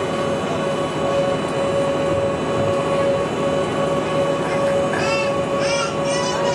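Cabin noise aboard a moving Bustech CDi double-decker bus: a steady rumble of engine and road noise with a constant high whine running through it. About five seconds in, a brief high-pitched voice cuts in over it.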